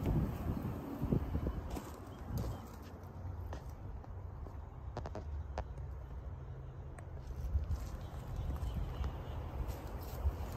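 Light, irregular footsteps on gravel with a low wind rumble on the microphone.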